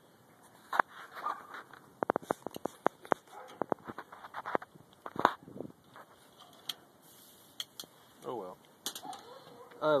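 Metal grill tongs clicking and scraping against the smoker's steel cooking grate: a quick run of sharp clicks about two seconds in, then a few scattered clicks.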